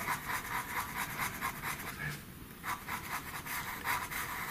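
Pastel pencil scratching on paper in rapid short strokes as grey is shaded into a drawn ear, with a brief pause a little past halfway.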